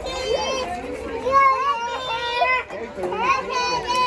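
Young children's high-pitched voices making drawn-out, wordless calls and squeals, two or more overlapping.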